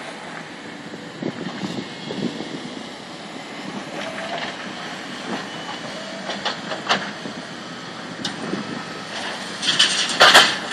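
Hydraulic excavators working on a demolition site: a steady machinery noise with a few sharp metal knocks scattered through it, louder near the end.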